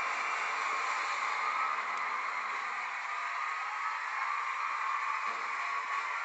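Studio audience cheering, a steady rushing haze of crowd noise heard through a television's speaker, just before the performance begins.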